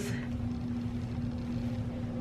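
Steady low background hum: one constant tone over a low rumble, with no separate events.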